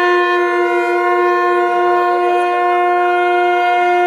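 A wind instrument sounding one long note at a single steady pitch. It swells louder right at the start and holds without a break.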